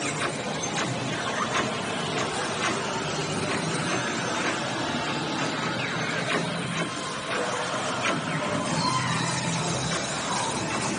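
Dark-ride soundtrack music and sound effects playing steadily, with scattered sharp clicks through it.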